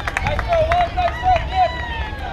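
Players' and spectators' voices calling out on a softball field: a short rising-and-falling call repeated four times and a long held call, with scattered sharp claps.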